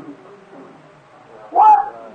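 A man preaching on an old sermon recording: a word trails off, then a pause filled with faint background murmur and hiss, then a loud, forceful exclaimed word near the end.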